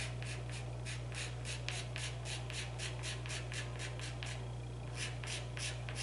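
A dark soft pastel stick scratching across pastel paper in short, quick strokes, about four a second, with a brief pause a little past four seconds in. The strokes lay in the dark underpainting that the lighter colours will be built on.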